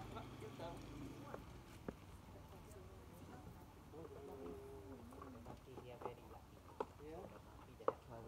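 Faint distant voices of people talking, with a few sharp clicks: one about two seconds in, one near seven seconds and one just before the end.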